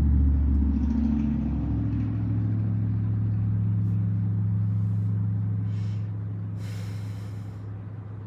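A low, steady rumble with a hum in it, fading gradually through the second half, with brief rustles of cards being handled on a table around four seconds in and again near the end.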